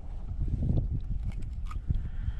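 Handling noise: a few scattered knocks and clicks as a redfish is held by a lip grip over a landing net in a kayak, over a low rumble of wind on the microphone.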